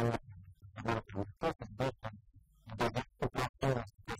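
A man talking steadily in short phrases, over a faint low hum.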